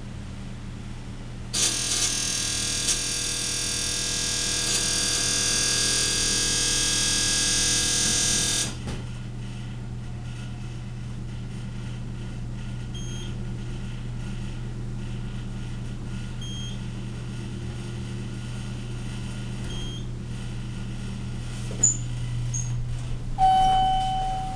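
Montgomery elevator's door nudging buzzer sounding loudly for about seven seconds while the doors close, then stopping. A steady low hum and a few faint short beeps follow, and a single chime tone sounds near the end.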